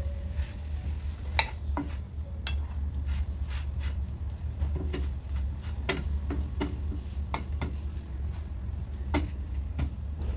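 Paratha frying with a faint sizzle on a non-stick griddle pan while a wooden spatula presses and turns it, knocking and scraping against the pan every second or two. A steady low hum runs underneath.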